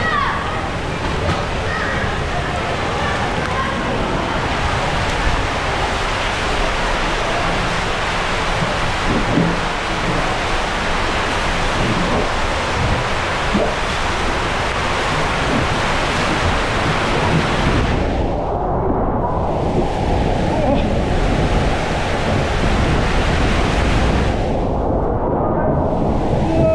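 Water rushing along a tube water slide under an inflatable family raft, a steady loud rushing noise. About two-thirds of the way through the sound turns muffled for several seconds, clearing briefly once in between.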